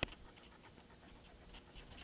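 Faint handling noises: a sharp click right at the start as a plastic glue bottle is set down on a cutting mat, then soft small ticks and rustles of card pieces being pressed together.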